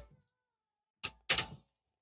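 Short vocal cries from a soloed dancehall vocal track playing back through delay and reverb: a brief one just after a second in, then a longer one, each dropping into dead silence.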